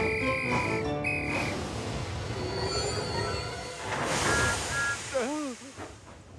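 Background music from an animated children's show, with held notes at the start. About four seconds in comes a rush of hiss with two short high tones, then two brief gliding vocal sounds near the end.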